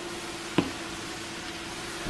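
Steady kitchen hiss under a faint steady hum, with a single sharp click a little over a quarter of the way in.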